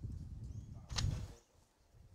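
Lawn bowls colliding in one sharp crack about a second in, as a fast driven bowl smashes into the head of bowls.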